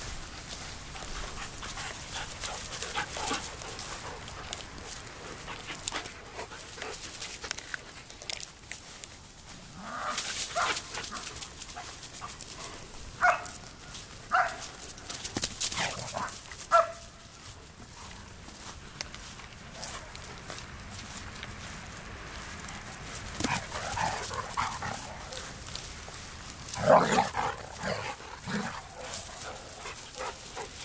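German Shepherds barking in short sharp calls while playing: three single barks around the middle, then a quicker run of barks near the end, over rustling from movement through grass.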